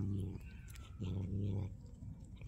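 Cat growling low over its caught mouse: two drawn-out, steady growls, each under a second long, the second starting about a second in.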